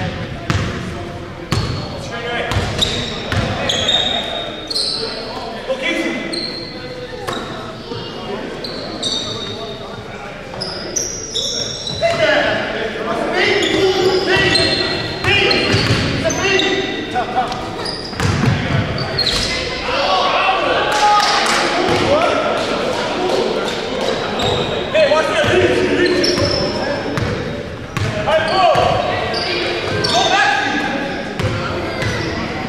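A basketball dribbled on a hardwood court amid short high sneaker squeaks and indistinct shouting from players, all echoing in a large gymnasium. The voices are louder from about halfway through.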